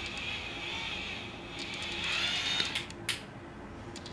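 Electric facial cleansing brush whirring as it scrubs skin, with small crackles from the bristles and a brief dip just after a second in. A sharp click sounds about three seconds in.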